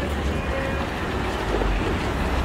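Busy city street ambience: a steady low rumble with a faint haze of crowd noise, without distinct events.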